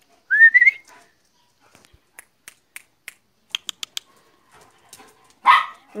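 A short rising high-pitched call, then a scattered run of sharp clicks as a large dog crosses a concrete floor, its claws and the hanging tag on its collar ticking.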